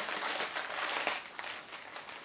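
Clear plastic packaging rustling and crinkling as it is handled, with a few faint clicks.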